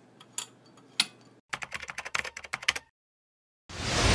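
Computer-keyboard typing clicks: a few separate keystrokes, then a quick run of about a dozen over a little more than a second. After a brief dead silence, a loud whoosh swells in near the end.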